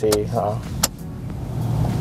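An ignition key clicks about a second in, then the Toyota Innova's 2.0-litre four-cylinder petrol engine starts, its low hum growing louder toward the end.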